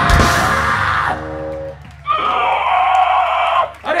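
A live hardcore band's closing chord and drum crash ringing out over a low amplifier hum, then a long scream about two seconds in that breaks off just before the end.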